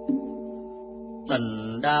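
Devotional background music of a steady held drone, with a soft struck note at the start; about a second and a half in, a male voice begins chanting a Vietnamese Buddhist verse over it.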